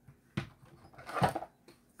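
A single light knock of a small plastic glue bottle being handled and put down on a craft cutting mat, followed by a spoken "okay".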